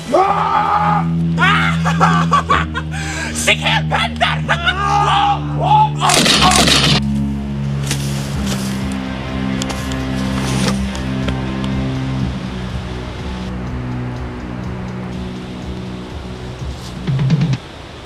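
Film soundtrack music with sustained low notes runs throughout, over shouts and grunts of a struggle in the first few seconds. A loud noisy hit or crash comes about six seconds in.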